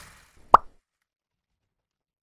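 Logo-animation sound effects: the fading tail of a whoosh, then a single short pop about half a second in.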